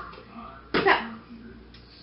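One short vocal sound from a woman, with a sudden start and falling pitch, about a second in; quiet room tone around it.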